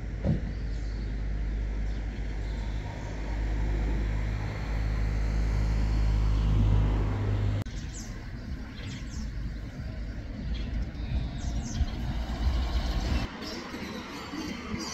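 A motor vehicle's engine running with a steady low hum that cuts off abruptly about halfway through. After the cut, a lower rumble of traffic goes on with a few short high chirps.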